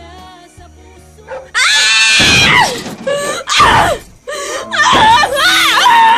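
Soft background music, then from about a second and a half in, loud high-pitched screaming in three long cries over the music.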